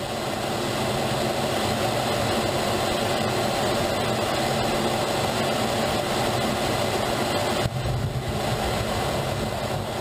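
Steady jet engine and airflow noise recorded by a camera on a Dassault Rafale M's nose as it comes in over the sea and onto an aircraft carrier's deck. The sound breaks off abruptly for a moment about three-quarters of the way through, then carries on.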